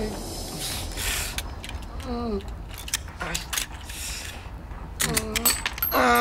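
A struggle between men: clothing rustling and brushing with short knocks and scrapes, and strained grunts, one falling cry about two seconds in and another about five seconds in.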